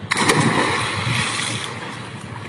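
A person jumping into a swimming pool: a sudden loud splash, then churning water that slowly dies down.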